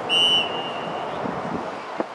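A referee's whistle: one short blast just after the start, loud for a moment and then trailing off faintly by about a second in, over steady wind noise.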